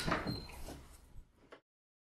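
A door being moved and shut, with a brief squeak and a couple of short knocks, fading down; the sound then cuts off abruptly about one and a half seconds in.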